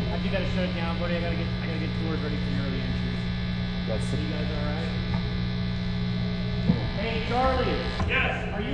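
Steady electrical mains hum from the stage's sound equipment, with faint voices talking underneath.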